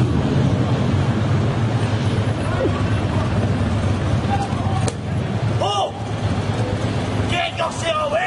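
Street traffic running steadily with a low rumble, with a few short pitched sounds, like voices, in the last couple of seconds.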